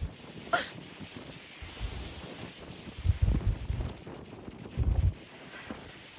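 Gale-force wind buffeting a phone's microphone: low rumbling gusts, the strongest about three seconds in and again near five seconds, over a steady rushing hiss.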